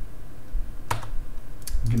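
Sharp clicks at a computer desk: one single click about halfway, then a quick run of about three clicks near the end.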